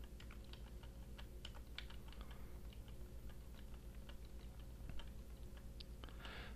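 Faint computer keyboard typing: scattered single key presses, several a second, over a steady low electrical hum.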